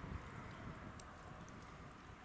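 Faint outdoor ambience: a low, uneven rumble and a steady hiss, with a few soft clicks.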